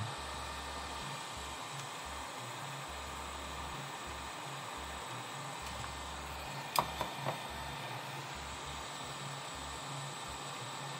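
Steady airy hiss of a hot air rework station's blower running on as the station cools down after desoldering. A short cluster of light clicks comes about seven seconds in.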